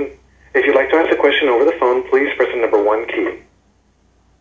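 Speech only: a voice talking over a telephone line, thin and narrow-sounding, stopping about three and a half seconds in.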